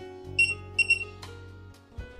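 Two short high beeps from an ISEO electronic cylinder lock as a master card is held to its reader, signalling that the card has been read, followed by a short click. Soft background music runs underneath.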